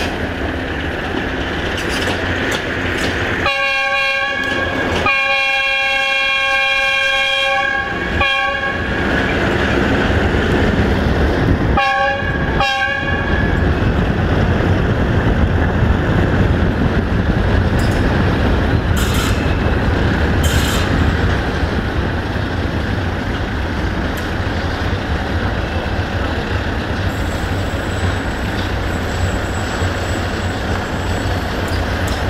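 Horn of a 060-DA (Electroputere LDE2100) diesel locomotive: a long blast of about five seconds, broken briefly near its start, then two short toots a few seconds later. Under it runs a steady low rumble and road noise from a car moving alongside the train.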